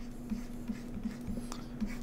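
Faint desk handling sounds: light scratching and a few soft clicks, over a steady low hum.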